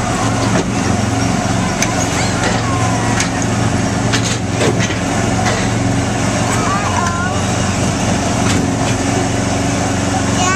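Small gasoline engine of an Autopia ride car running steadily while it is driven along the track, with a few short bits of voice over it.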